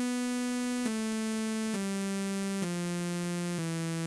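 ReaSynth software synthesizer set to a pure sawtooth wave, playing a descending scale of held notes (B3, A3, G3, F3, E3), moving down one step about every second with no gap between notes.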